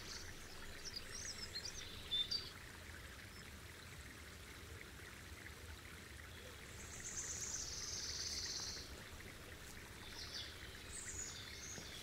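Faint outdoor woodland ambience: a low steady hiss with birds chirping briefly about a second in and again near the end, and a longer high trill about seven to nine seconds in.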